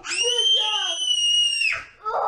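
A young child screaming: one long, very high-pitched scream held steady for most of two seconds, stopping abruptly near the end.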